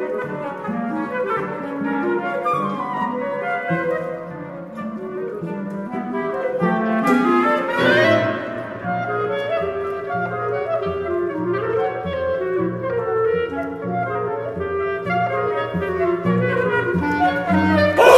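Contemporary chamber music for flute, clarinet, violin and cello, with the clarinet standing out among shifting held notes. A low string line comes in about halfway through.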